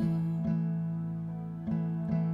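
Slow worship song in a pause between sung lines: an acoustic guitar strummed a few times over a held low keyboard chord, with no voice.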